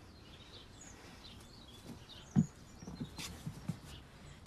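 Quiet outdoor ambience with faint bird chirps, a soft thump a little past halfway and a few light knocks near the end.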